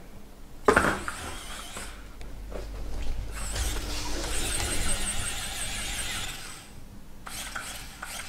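A knock about a second in, then the motor of a rechargeable rolling bone dog toy running with a high, fluttering squeal for several seconds as a dog grabs the toy in its mouth.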